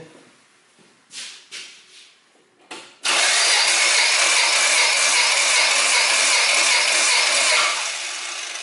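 A Toyota 4A-FE four-cylinder engine cranked on its starter motor with the spark plugs removed, for a compression test on the hot engine: after a few faint knocks, a sudden loud, even whirring with a fast steady beat starts about three seconds in, holds for about five seconds, then stops and fades away near the end.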